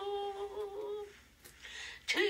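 A woman singing unaccompanied, holding one long note that fades out about halfway through, followed by a short pause before the next phrase.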